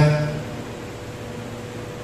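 A man's voice through a microphone trails off about half a second in, leaving a pause filled with steady background hiss and a faint steady hum.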